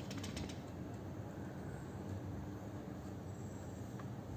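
Faint handling of a plastic UPS case as it is turned over in the hands, with a few light clicks in the first half-second, over steady low room noise.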